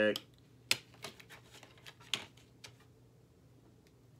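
Plastic DVD case being handled and opened: one sharp click under a second in, then scattered lighter clicks and taps.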